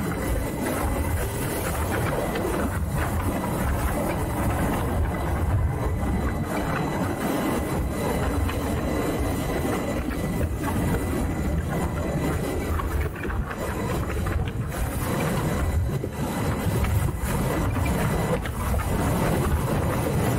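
Wind buffeting the microphone and road noise from a Harley-Davidson LiveWire electric motorcycle riding at street speed: a steady, rumbling rush with a faint high, thin tone.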